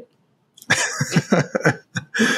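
A man laughing: a quick run of short bursts starting about half a second in.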